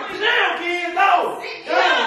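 Several people shouting and talking over one another in raised voices, with no clear words.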